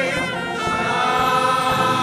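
Church choir singing a gospel song, many voices together.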